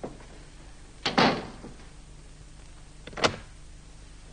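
A door being shut, with a noisy thud about a second in, followed about two seconds later by a single sharp click at the door.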